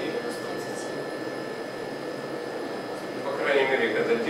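Local cryotherapy machine running, blowing a steady stream of cold air through its hose nozzle: an even hiss with a faint steady high tone in it.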